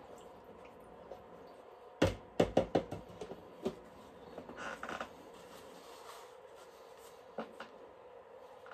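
Paintbrush being cleaned: a quick run of five or six sharp knocks about two seconds in as the brush is knocked against a hard edge. A short rubbing sound follows in the middle, and there is one more knock near the end.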